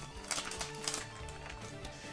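Soft background music with held notes, and a few light taps and rustles from trading cards being handled in the first second.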